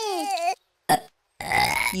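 Two cartoon babies crying, a wail that falls in pitch and stops about half a second in; near the end, a short burp.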